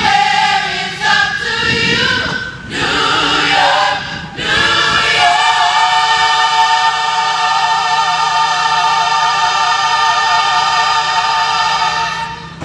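Teen gospel choir singing live, several short phrases and then one long held chord with vibrato from about four and a half seconds in.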